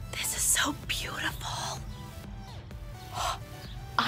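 A woman's whispered, breathy voice in short bursts, over a steady low hum.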